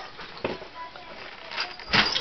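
Great Dane and ferret wrestling on crate bedding: faint scuffling with a soft knock about half a second in and a louder knock near the end.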